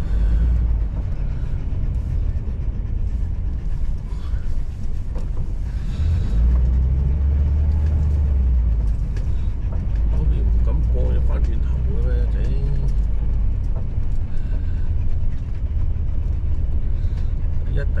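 Steady low rumble of a vehicle being driven, heard from inside the cab: engine and road noise, growing heavier about six seconds in.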